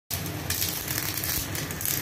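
Electric arc welding: the arc crackles and sizzles steadily as truck leaf-spring steel is welded onto a broken plough share tip, with a low hum underneath.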